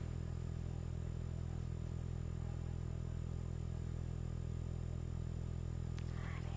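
A steady low hum with no other sounds over it.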